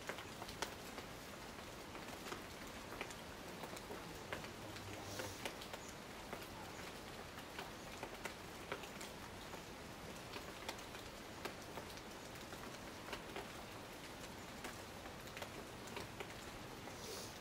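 Rain falling in a tropical rainforest: a steady soft hiss with many individual drops ticking at irregular moments.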